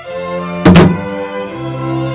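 A loud, sudden thunk about two-thirds of a second in, over slow, sad bowed-string music.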